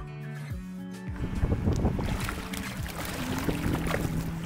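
Fish thrashing and splashing at the surface of a pond as they take thrown food, a dense crackling splash that starts about a second in, over background music.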